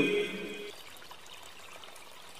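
A man's drawn-out chanted word ends in the first half-second. After it comes a faint, steady sound of running water.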